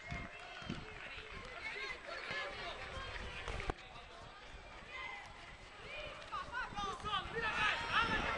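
Many voices of spectators and young players shouting and calling over a football game, high-pitched and overlapping, growing louder near the end. A single sharp knock stands out a little before halfway.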